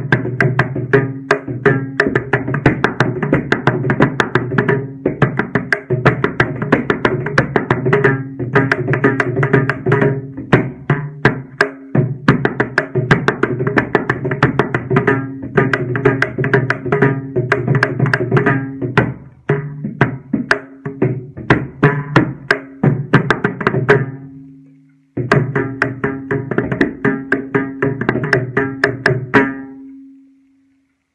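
Mridangam solo in Carnatic style in eight-beat Adi tala: fast, dense hand strokes over the steady pitched ring of the tuned drum head. The playing stops briefly about 24 seconds in, resumes, and closes on a ringing stroke near the end.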